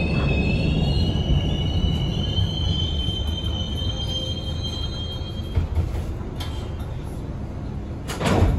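Hawker Siddeley-built 01200-series subway car running, heard from inside the car: a steady low rumble from the wheels and running gear. A high wheel squeal rides over it and stops about two-thirds of the way in, followed by a couple of sharp clicks, as the rumble slowly grows quieter.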